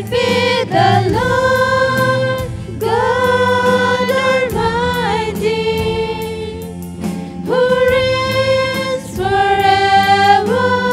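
Female voices singing a Christian worship song together, holding long notes, over electric bass and acoustic guitar with a light steady beat.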